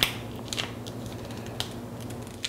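Block of cheese scraped down a handheld rasp grater in a few short, uneven strokes, the first the loudest.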